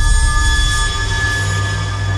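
Background music from a TV drama score: a few high notes held steadily over a low drone, with no beat.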